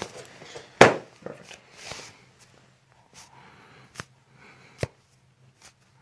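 A single sharp crack about a second in as a chiropractor thrusts down on the upper back of a patient lying face down: a spinal adjustment. A few softer clicks follow later.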